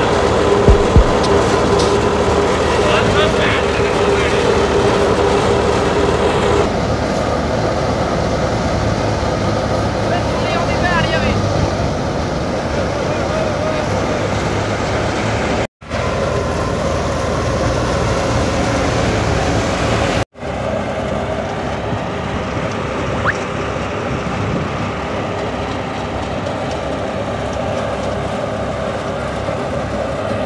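Tractor-driven wheat thresher running steadily as sheaves are fed in: a dense, continuous machine drone of the threshing drum and belt drive, with the tractor engine under it. The sound drops out abruptly twice, around 16 and 20 seconds in.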